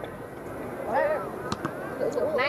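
Players calling out on a football pitch, with a sharp thud of a football being kicked about one and a half seconds in.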